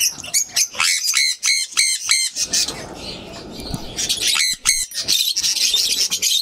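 Caged parrots chirping and calling, with runs of short repeated shrill calls, about four a second: one run about a second in and a shorter one just past the middle.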